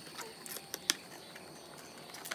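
A few light clicks and taps from cardboard 3D puzzle pieces being handled and pressed together, with one sharper click about a second in.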